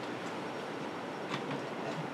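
Room tone: a steady low hiss with a few faint clicks in the second half.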